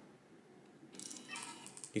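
Canon PowerShot G7 X Mark II's zoom lens motor extending the barrel at power-on, starting about a second in: a thin whirr from a lens that was damaged in a drop and has shattered glass inside.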